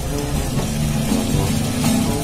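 Acoustic guitar music.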